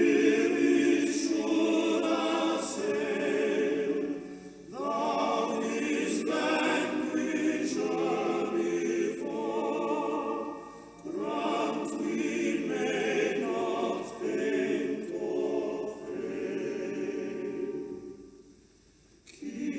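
A choir singing sacred music in long sustained phrases, breaking briefly about four and a half seconds in and again about eleven seconds in.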